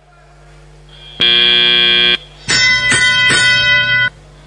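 The competition field's electronic buzzer: a steady, loud tone lasting about a second that marks the end of the autonomous period. After a short pause comes a second, brighter tone of about a second and a half, broken twice, that marks the start of the driver-controlled period.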